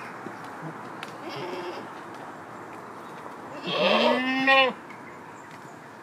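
Alpine goat bleating once, a single call of about a second starting about three and a half seconds in, rising in pitch at the start and then held.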